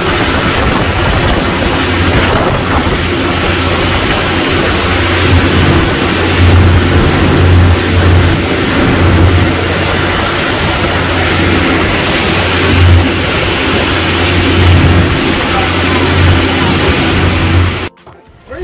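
A boat's engine running at speed, with the wake and spray rushing and strong wind buffeting the microphone in a dense, steady rush with a pulsing low rumble.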